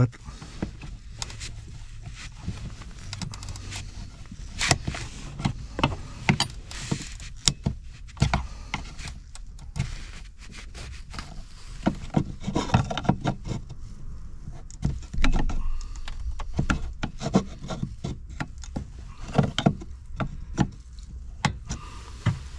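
Irregular plastic clicks, taps and rubbing as fingers pry and wiggle the locking tab of a stiff plastic 8-wire wiring connector to unplug it from the 4x4 module, with busier stretches around the middle and near the end.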